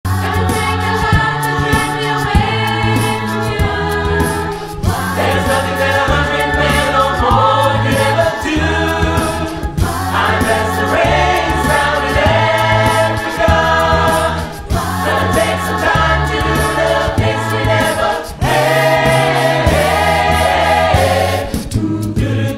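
A South African choir singing in harmony, many voices over a repeating low bass line, in phrases with short breaks about every five seconds.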